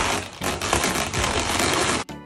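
Inflated 260Q latex twisting balloons rubbing against each other as they are worked by hand: a continuous rustling noise with many small clicks.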